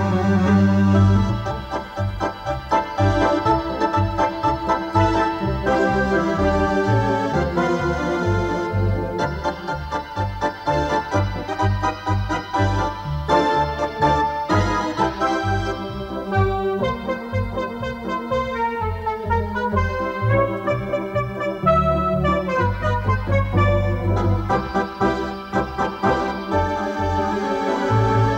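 Ballpark organ playing a polka over a steady oom-pah bass, with quick runs of notes in the melody.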